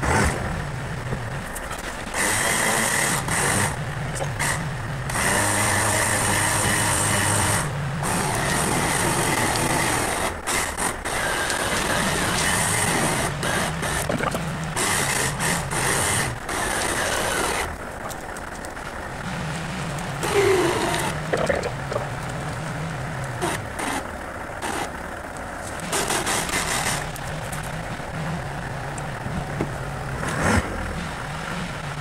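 Badland 12,000 lb electric winch pulling a big log, its motor running in bursts over a steady truck engine. The winch is loudest from about two seconds in until past the middle, eases off, then runs again briefly near the end.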